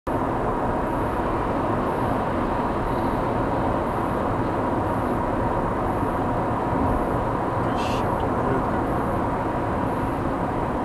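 Steady in-car road and engine noise of a car cruising on a highway, picked up by a dashcam's microphone, with a faint steady whine.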